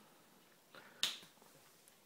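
A single sharp click about a second in, with a faint softer sound just before it; otherwise quiet.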